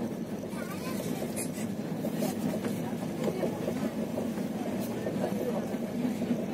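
Steady running noise of a moving passenger train heard from inside the carriage, with a few brief clicks and indistinct voices under it.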